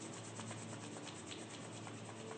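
Palms rubbed briskly together to warm them: a fast, even run of dry skin-on-skin strokes.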